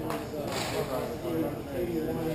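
Indistinct voices of people talking in a large, echoing rink hall, with a brief hiss about half a second in.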